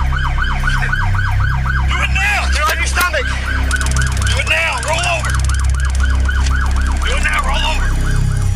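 Police car siren on its rapid yelp setting, wailing up and down about four times a second, with officers shouting over it and a sharp crack about three seconds in.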